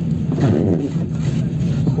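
Steady low hum of a moving car's engine and tyres on a wet road, heard from inside the cabin.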